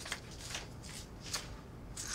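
Paper banknotes handled and counted, rustling softly with a few faint crisp flicks.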